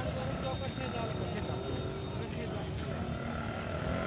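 Busy roadside ambience: indistinct voices of people nearby over a steady hum of traffic and idling vehicles.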